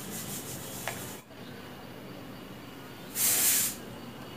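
Cut pieces of dressmaking fabric rustling as they are handled and spread out. A louder swish of cloth comes a little after three seconds in and lasts about half a second.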